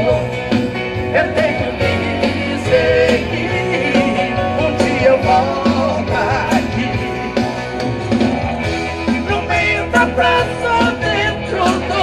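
Live sertanejo band playing on electric guitars, bass and keyboards over a steady drum beat.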